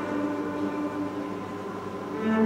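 A quiet, sustained passage of free improvisation: the viola holds a soft note that fades after about a second, with the piano in the background.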